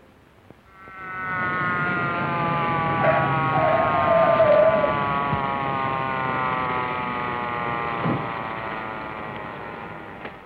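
Police car siren, one long wail that slides slowly down in pitch as it winds down, with a short wavering tone over it about three to five seconds in.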